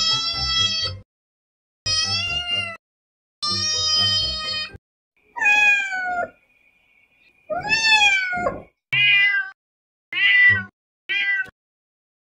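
Cats and kittens meowing: about eight separate meows with dead silence between them. The first three are long and steady, and the later ones are shorter and bend up and down in pitch.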